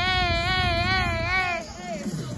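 A woman's voice holding one long, high, wavering note, like a drawn-out wail. It dips and trails off shortly before the end.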